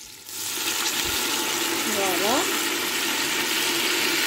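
Water poured into a hot pot of browning beef and oil, setting off a sudden loud hiss of sizzling and steam about a quarter second in that then holds steady.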